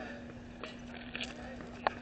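Faint background voices of spectators, with a steady hum underneath and a few sharp clicks, the loudest near the end.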